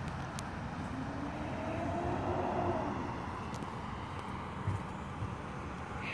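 A car driving by on the street: a steady hum of engine and tyres that swells to a peak about halfway through and then fades, its pitch rising and then falling as it passes.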